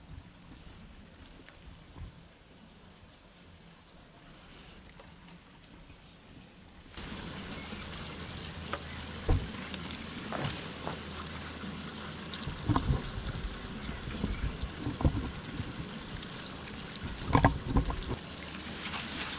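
Asian small-clawed otters eating raw fish: wet chewing and crunching with many sharp clicks. It starts about seven seconds in, after a faint stretch.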